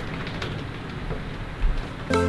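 Steady hiss of rain over a low rumble of city traffic, with a slight swell about a second and a half in.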